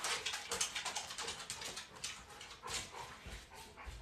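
Faint sounds of a dog in the room: a quick, irregular run of short noises.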